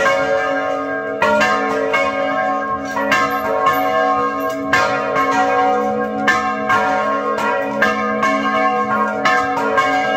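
Several large church bells rung by hand with ropes from the tower, struck about twice a second in an uneven rhythm. Their deep tones ring on and overlap between strikes.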